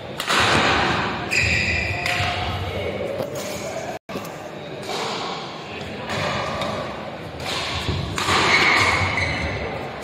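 Badminton doubles play in a reverberant hall: racket strikes on the shuttlecock and thuds of players' footwork on the court, with two brief high squeaks of shoes on the court surface.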